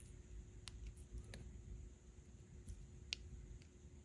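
Faint handling sounds of a cotton swab scraping thermal grease out of the cut tip of a foil packet: a few soft, scattered clicks and rustles, the sharpest a little after three seconds in, over a faint steady hum.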